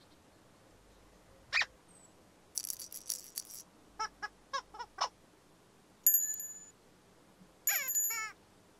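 Cartoon sound effects over a quiet background: a short squeak, a brief shimmering hiss, then a quick run of five short rising chirps. A bright bell-like ding rings out about six seconds in, and another ding with more chirps comes near the end.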